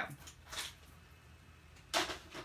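Cardstock being handled after scoring: a short paper swish about half a second in, then a single sharp click near the end.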